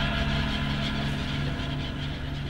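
Boat engine running steadily, a low even drone with a noisy wash over it.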